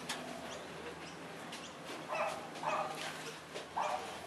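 Long-billed corella making three short, low calls in the second half, with faint clicks between them.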